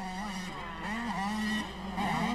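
125cc two-stroke motocross bikes revving on the track, their engine pitch rising and falling as the riders work the throttle over the jumps.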